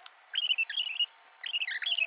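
Small birds chirping, a quick run of short high whistled notes that rise and fall.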